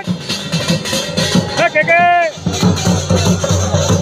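A large two-headed drum beaten in a steady rhythm amid the noise of a walking crowd. About one and a half seconds in, a voice gives one long shout that rises and falls.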